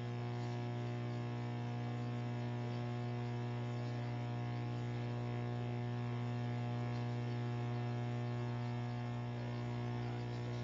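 Steady electrical mains hum and buzz from the chamber's microphone and sound system, one unchanging tone with many overtones.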